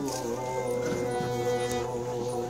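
Instrumental accompaniment to a Bengali folk song, holding a steady drone chord between sung lines. There is a light click near the end.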